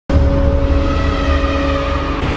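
Loud cinematic logo-intro sound effect: a deep rumble with a few steady held tones over it, starting abruptly.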